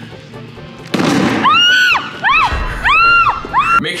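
An over-inflated basketball bursts with a sudden bang about a second in. It is followed by a run of high tones, each sliding up and back down, over a low bass.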